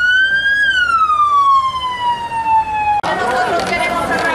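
Police pickup truck's siren sounding one wail: the pitch rises briefly, then falls slowly, and the sound cuts off suddenly about three seconds in. Voices follow at the end.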